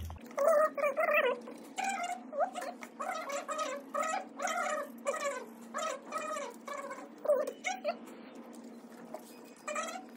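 A quick series of short meowing calls, cat-like, about two a second, each sliding in pitch. There is a pause before a last call near the end.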